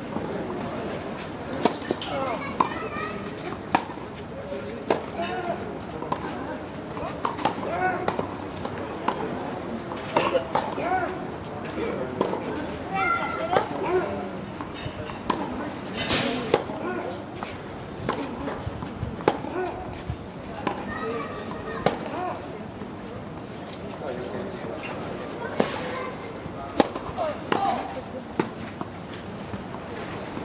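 Indistinct chatter of nearby spectators, with sharp pops of a tennis ball struck by racquets on a clay court at irregular intervals. The loudest strike comes about 16 seconds in.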